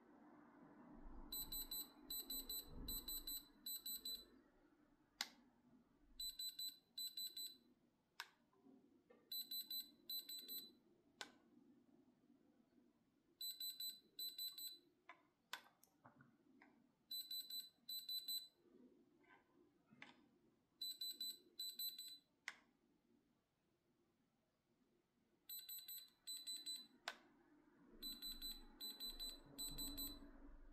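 Handheld Diamond Selector II thermal diamond tester beeping as its probe is pressed against a white stone: about eight bursts of rapid high-pitched beeps, each lasting a second or two, signalling a reading in the diamond range. Short sharp clicks fall between the bursts as the probe tip touches the stone.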